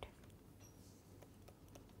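Near silence with faint, scattered light taps of a stylus writing on a tablet screen.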